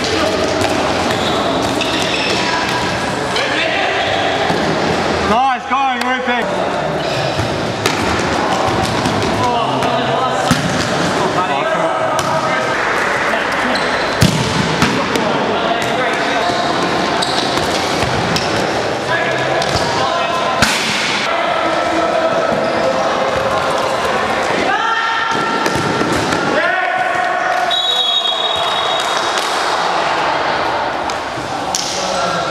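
Futsal ball being kicked and bouncing on an indoor court, a run of sharp thuds with the sharpest strikes about ten, fourteen and twenty seconds in, over players' shouts and voices.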